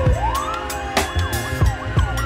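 Police van siren wailing, its pitch sweeping up early on and then sliding slowly down, with other siren sweeps overlapping. Music with thudding beats plays underneath.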